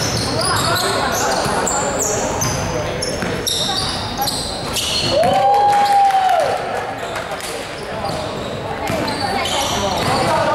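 Basketball game sounds in a large echoing hall: sneakers squeaking on the hardwood court and the ball bouncing, with players' voices. About halfway through comes one long held tone.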